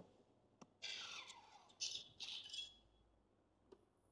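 A click as the Iron Man Mark L helmet's power switch is turned on, followed by the helmet's electronic startup sounds from its small built-in speaker: a falling sweep, then two short high chirps.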